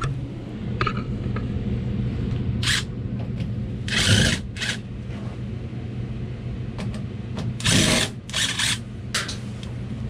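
Cordless screwdriver running in several short bursts, backing screws out of an air handler's sheet-metal access panel. Under it runs the steady hum of the air handler's blower, which keeps running.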